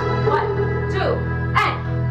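Instrumental backing track of a pop ballad playing steadily, with two short sliding vocal sounds over it, one about half a second in and one near the end.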